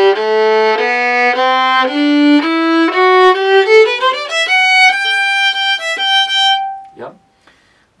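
Bowed violin playing a rising scale, note after note, with a short slide up between positions about four seconds in, ending on a long held high note that stops shortly before a brief spoken "yeah".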